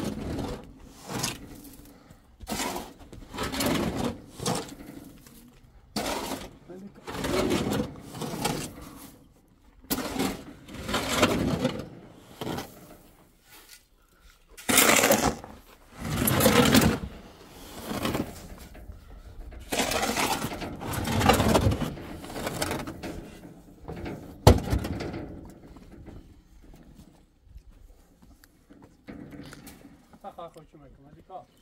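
A shovel scraping and scooping sand from a metal pickup-truck bed and tipping it into a wheelbarrow, in uneven strokes every second or two. One sharp knock comes about two-thirds of the way through.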